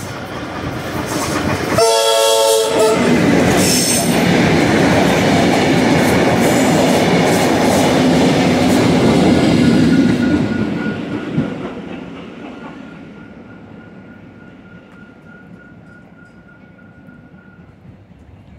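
Tait electric suburban train giving one short horn blast about two seconds in, then running through the station with loud wheel and motor noise. The noise falls away after about ten seconds as the train departs, leaving a faint steady high whine.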